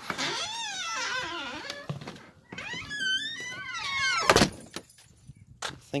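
A door's hinges creaking in long, wavering, high-pitched squeaks, twice, then the door shutting with one sharp bang a little over four seconds in.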